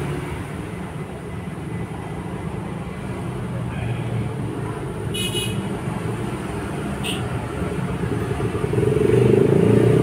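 Steady low rumble of road traffic that swells near the end, with a short vehicle horn toot about five seconds in.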